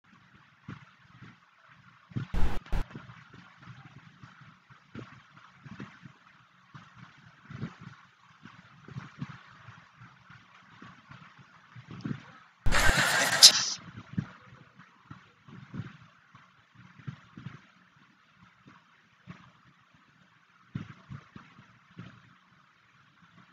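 Faint outdoor ambience from the cricket ground's field microphones, with scattered low knocks. Two brief loud noise bursts stand out, one about two seconds in and a longer one about thirteen seconds in.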